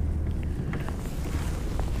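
Steady low rumble with faint rustling of a jacket and a few light clicks as fishing rods are handled.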